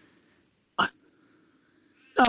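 One short, sharp vocal sound, like a quick catch of breath or a hiccup, a little under a second in; otherwise near silence.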